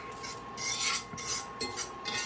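Trimmed steak fat sizzling in a hot cast iron skillet while a fork scrapes and rubs the pieces across the iron in uneven strokes. A faint steady tone from the induction burner runs underneath.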